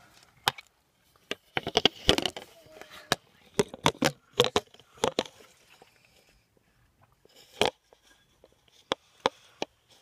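Handling noise from a phone being moved about in the hand: an irregular run of clicks, knocks and rubbing, in two busy clusters early and midway, then one sharp knock later on.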